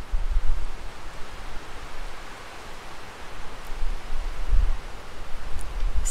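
Wind buffeting a handheld lavalier microphone's fur windscreen: deep rumbling gusts, strongest near the start and again about four and a half seconds in, over a steady hiss.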